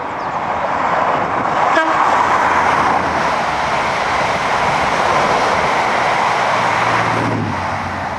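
InterCity 125 high-speed train passing at speed under the camera: a steady rush of wheel and air noise that builds as the train comes through and eases off near the end.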